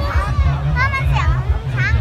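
Children's high-pitched voices calling out in a crowd, with music playing underneath.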